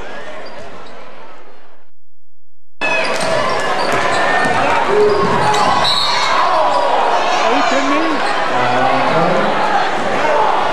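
Basketball game sound in a gym: a ball bouncing on the hardwood court amid crowd and player voices. The sound fades out and drops away entirely for about a second, two seconds in, then comes back.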